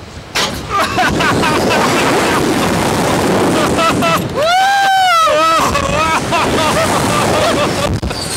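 Riders screaming and shouting on a Slingshot reverse-bungee ride as it launches just after the start, with heavy wind rushing over the onboard microphone. One long, high scream stands out near the middle.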